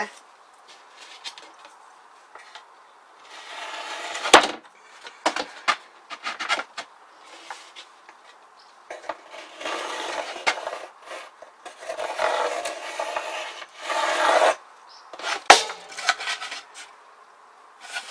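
A plywood board rubbing and scraping against a plywood cabinet frame as it is pushed in and worked for fit, in two stretches, with a sharp wooden knock about four seconds in and another near fifteen seconds. The board is still catching: there is still a lip, and a fraction has to come off.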